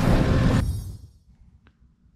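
Tractor engine running steadily, heard from inside the cab, fading out within the first second. Then near silence, with one faint click near the end.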